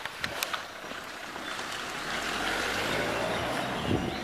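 A road vehicle passing, its tyre and engine noise swelling through the middle and easing off near the end, after a couple of sharp clicks at the start.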